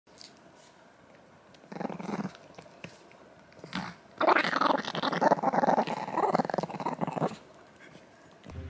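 Small Chihuahua growling while guarding a chew bone. A short growl comes about two seconds in, then a long, louder, rattling growl from about four seconds until just past seven.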